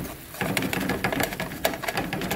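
Metal utensil chopping and scraping against a stainless steel frying pan, cutting up chicken and onion: a quick run of sharp metallic clicks and taps, several a second, starting about half a second in.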